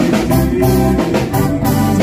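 Live seggae band playing, with drum kit, bass, guitars and an organ-like keyboard, on a steady beat of about two drum hits a second.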